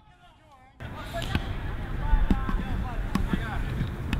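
Live pitch sound of a small-sided football match: a few sharp thuds of the ball being kicked and bouncing, over faint shouts from players. It starts about a second in, after a brief near-silence.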